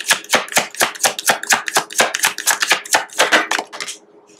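A deck of oracle cards being shuffled by hand, the cards slapping together in a fast, even run of crisp clicks at about six a second.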